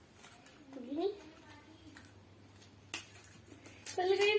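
Scissors snipping at a plastic chocolate wrapper: a few sharp clicks near the end. A child's short hum is heard about a second in.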